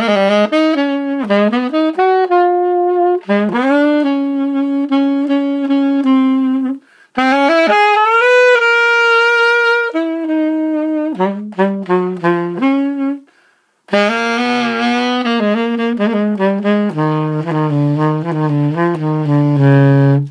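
Yamaha-made Vito alto saxophone, a student model, played in melodic phrases with two short breaks. The last phrase drops to the bottom of the horn's range near the end, and the low notes speak easily.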